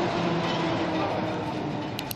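An aircraft passing overhead: a loud, steady rumble with a few held tones that slowly fades away.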